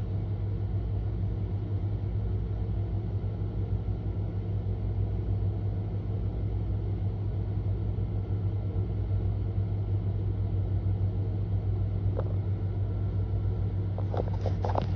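A steady low mechanical hum that holds one even pitch and does not change while the delivery van moves.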